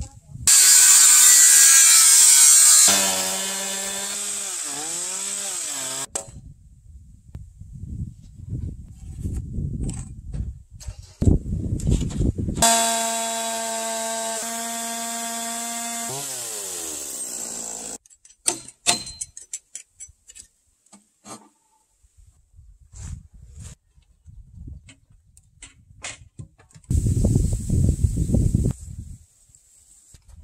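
Stihl chainsaw cutting into a timber beam in short bursts. Each time it is released its electric motor winds down with a falling whine to a stop. Scattered knocks and handling noises come between the cuts, and another short burst of power-tool noise comes near the end.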